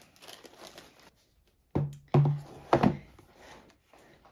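Faint rustle of a plastic bag, then three or four knocks, each with a short low ring, as cardboard diamond-art kit packaging is handled and set down on a wooden table.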